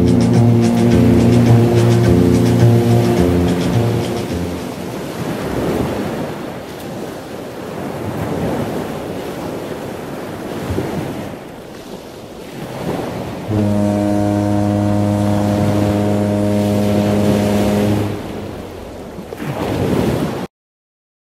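The tail of a strummed guitar song for about four seconds, then small waves washing onto a sandy beach. Near the end comes one long, steady, low horn blast lasting about four seconds.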